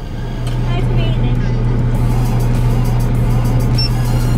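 Car engine idling, a steady low hum heard from inside the cabin. Music with a quick beat comes in about halfway, over faint voices.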